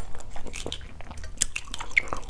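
Close-miked small crackles and clicks of a boiled balut (fertilized duck egg) shell being cracked and picked off with the fingertips, coming irregularly throughout.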